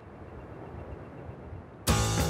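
A noisy whooshing swell, a transition sound effect, rising steadily in level, then music with guitar cuts in loudly near the end.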